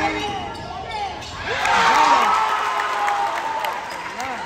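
A basketball being dribbled on a hardwood gym floor among shouting voices from players and spectators. The voices swell louder about one and a half seconds in, with sharp short ticks scattered throughout.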